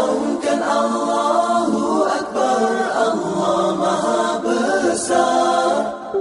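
An unaccompanied vocal group singing a song in close harmony (a cappella), with no instruments.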